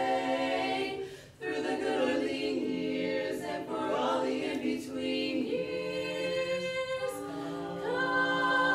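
Women's a cappella vocal quartet singing in close harmony, holding chords that move in steps, with a brief pause about a second and a half in before the voices come back in.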